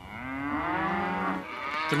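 A cow mooing: a single long call that falls slightly in pitch and lasts most of two seconds.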